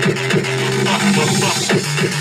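Electronic music with a fast, steady beat over a low bass line. From about half a second in, the beat thins out under gliding pitch sweeps, and it comes back near the end.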